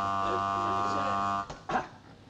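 Electric alarm buzzer on a stable's temperature-alarm panel sounding as one steady buzz, then cutting off suddenly about one and a half seconds in, followed by a brief sound. The alarm signals that one of the stable thermostats has tripped.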